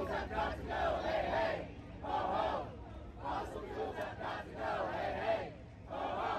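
A crowd of protesters chanting a slogan together, in short repeated phrases with brief pauses between them.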